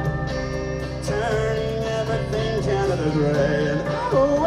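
Live rock band playing a song, with guitars over a steady bass, between sung lines.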